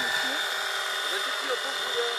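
Radio-controlled model helicopter in flight, its motor and rotor giving a steady high-pitched whine.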